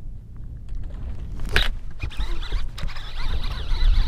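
Wind rumbling on the camera microphone, with a sharp click about one and a half seconds in and scratchy rustling handling noise growing louder through the second half as the camera is moved.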